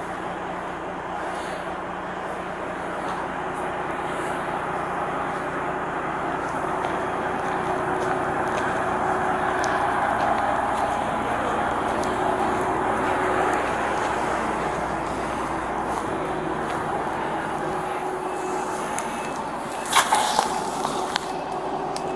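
Heavy diesel truck engine running steadily, growing louder toward the middle and easing off again. A burst of sharp noises comes near the end.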